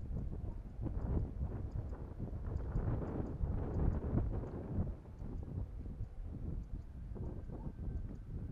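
Wind buffeting the microphone in uneven gusts, with crackling rustle of dry grass and crop stalks.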